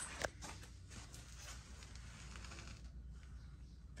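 Faint rustling and handling noise from someone moving on foot in a tight space, with a sharp click about a quarter second in, over a low steady hum.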